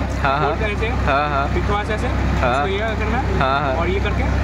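A man's voice speaking briefly over a constant low hum, with another voice in the background whose pitch wavers rapidly up and down.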